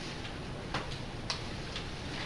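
Classroom room tone: a steady background hiss with a few faint, unevenly spaced small clicks.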